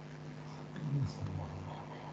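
A man's brief wordless vocal sound, like a low falling 'hmm', about a second in, over a steady low hum.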